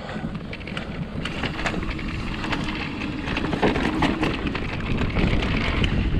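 Mountain bike riding fast down a dirt trail: tyres rolling over the ground with frequent rattles and clicks from the bike, under rumbling wind noise on the action camera's microphone.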